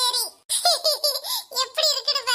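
A high-pitched, pitch-shifted cartoon character's voice laughing in short, bouncing syllables.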